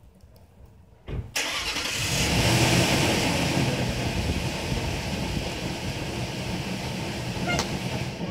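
A vehicle engine starting about a second in, running up briefly, then settling to a steady idle.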